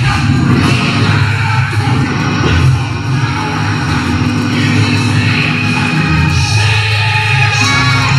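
Loud church music with a singing voice over it, continuous throughout: the preacher's sung, shouted delivery into a handheld microphone over sustained instrumental backing.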